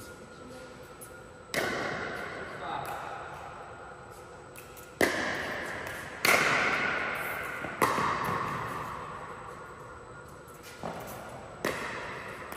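Sharp pops of a pickleball striking paddles and court, about six irregularly spaced, each ringing on in the echo of a large indoor hall.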